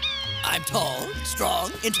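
Cartoon soundtrack: background music over a steady low bass, with a brief high wavering whistle-like glide at the start, then several bending, voice-like cries.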